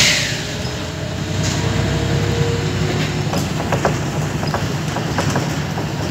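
Inside a Volvo B10BLE city bus on the move: a steady low drone from the engine and road, with a faint whine from the driveline and light rattling clicks from the fittings. A short hiss sounds right at the start.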